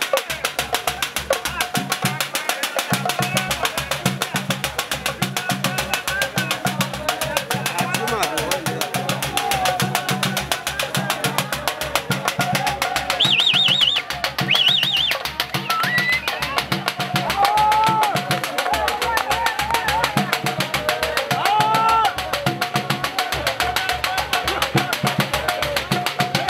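Mang'oma, Nyakyusa traditional drum music: a row of small hand drums played in a fast, steady rhythm, with crowd voices shouting and singing over it. Two short, high trills sound about halfway through.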